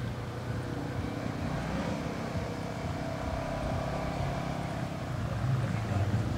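Motorcycle engine running at low speed through a tight cone slalom, its revs rising and falling, getting a little louder near the end.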